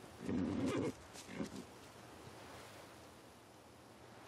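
A horse snorting: one loud snort of about half a second right at the start, then a shorter, softer one about a second in.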